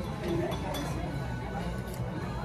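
Restaurant dining-room background: other diners' chatter and music, with a few light clinks of cutlery and dishes.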